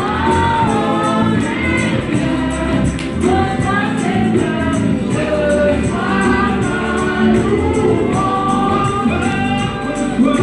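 A gospel worship song sung by several voices together over instrumental backing, with a steady beat.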